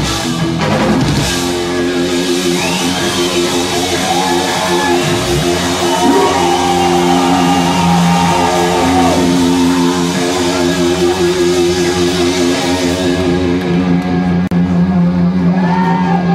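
A rock band playing live in a club, loud electric guitar chords held steadily over a drum kit, with some high-pitched sliding guitar tones over the top.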